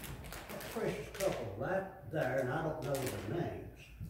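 A man speaking indistinctly in a low voice; the words are not made out.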